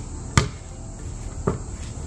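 A basketball bouncing twice on a concrete pad: a sharp bounce about a third of a second in and a softer one about a second later. Insects chirr steadily throughout.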